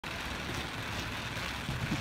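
Steady outdoor background noise, a low rumble with a hiss over it.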